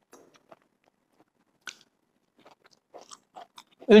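Crispy fried okra being chewed: faint, scattered crunches, with a single one a little under two seconds in and a denser run near the end.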